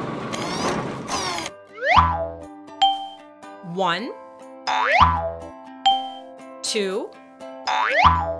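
Cartoon machine sound effect, a whirring, rattling clatter, for the first second and a half, then a light children's music tune with a springy boing effect about every three seconds. Between the boings a cartoon voice counts the bottles.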